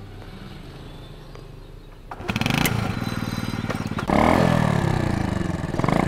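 Small step-through motorbike's engine starting about two seconds in and then running with a rapid firing beat, getting louder again about four seconds in.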